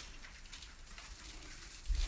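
Faint handling noise from a phone being carried through a room, with a low thud near the end.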